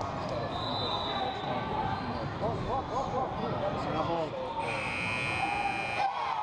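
Gym scoreboard buzzer sounding for about a second and a half near the end, a loud steady buzz that marks the end of the first half. Before it, a basketball bouncing and voices echo around the gym.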